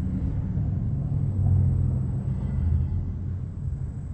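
A low rumble that swells about a second and a half in and again a little later, then eases off.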